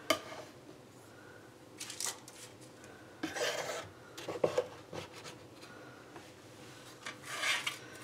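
Kitchen knife scraping and tapping as squares of raw cracker dough are lifted from the countertop and laid on a parchment-lined baking sheet. A few short scrapes and light clicks come one by one, with quiet between them.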